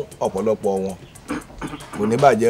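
Film dialogue: a person speaking in short phrases with pauses between them.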